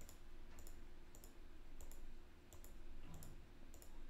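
A computer mouse clicking over and over, each click a quick press-and-release pair, about once or twice a second. It is stepping a chart's bar replay forward one candle at a time. A faint steady hum lies underneath.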